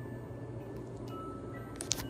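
Soft music from the hotel room's lit fireworks headboard: a few single, sustained chiming notes over a steady low hum, with a couple of sharp clicks near the end.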